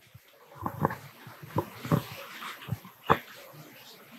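Faint handling knocks and rustle from a handheld microphone as it is passed to another person. The sharpest knock comes about three seconds in.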